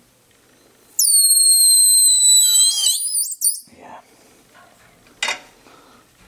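Compressed air at about 95 psi escaping from a pressure-tested Bristol engine crankcase: a loud, high-pitched whistle that starts suddenly about a second in, holds steady for about two seconds, then wavers and drops in pitch as the pressure bleeds off and cuts out. A single sharp click comes near the end.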